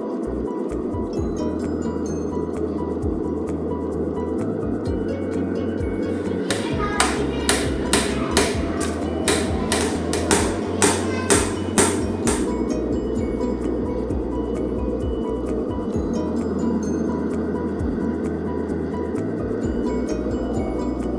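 A hammer striking about a dozen times, roughly two blows a second, in the middle of the stretch, over steady background music.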